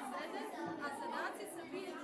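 Indistinct chatter of children and adults talking over one another.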